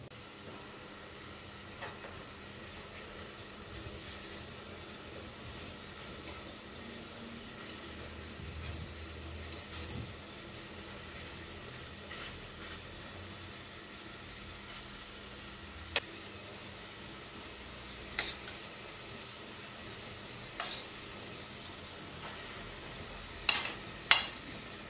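Chicken pieces sizzling steadily in sauce in a stainless steel pot, with a few sharp clicks of metal tongs against the pot. Near the end, a louder metal clatter as a frying pan is knocked against the pot's rim to tip fried onions in.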